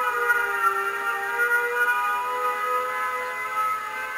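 Air-raid warning siren sounding a held wail of several tones at once that waver slightly in pitch, the lowest dipping a little early on.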